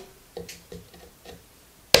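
A few light wooden taps and clicks as a chisel is set against the workpiece, then near the end one loud, sharp mallet strike on the chisel, chopping into the wood.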